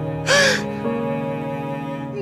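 Slow background music of held chords, with one loud, harsh crying sob about a third of a second in.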